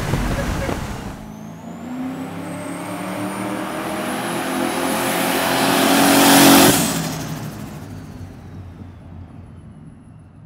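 Turbocharged 440 big-block V8 in an old Dodge pickup accelerating past, with the engine note climbing and a high turbo whistle rising above it. It is loudest as the truck passes, about six and a half seconds in, then fades away with the pitch dropping.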